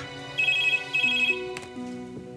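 Electronic desk telephone ringing: two short trilling rings of about half a second each, after a brief click, over background music.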